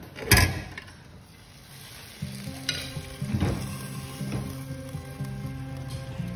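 A single sharp knock as a roasted whole chicken is handled in an air fryer's wire basket. Background music with low, steady notes comes in about two seconds in, with a few light clicks over it.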